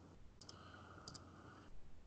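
A few faint computer mouse clicks, two pairs about half a second apart, over near silence.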